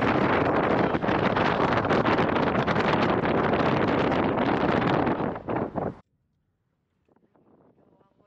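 Loud wind noise on the microphone of a moving car, mixed with road noise. It cuts off abruptly about six seconds in, leaving near silence.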